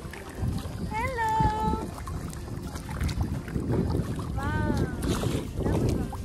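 Wind rumbling on the microphone and water sloshing as a two-paddle kayak is paddled. Two short high-pitched vocal calls cut through, one about a second in and another near the five-second mark.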